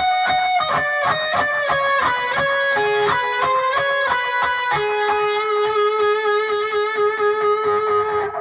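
Electric guitar playing a fast picked lead run high on the neck, stepping down through short repeated notes. From about five seconds in it settles on one held note, the 19th fret of the D string, with vibrato.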